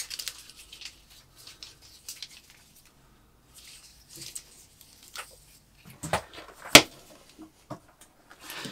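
Plastic drag-chain links clicking and rattling softly as the chain is turned over by hand and laid down on a wooden bench, with one sharp click about three-quarters of the way through.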